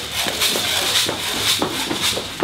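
Quick, heavy footsteps, about three a second, of a strongman running across rubber gym flooring while carrying a steel keg.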